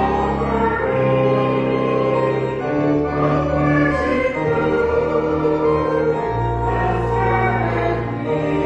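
Church music: a choir singing a slow hymn over long held organ chords, the chords changing every second or two.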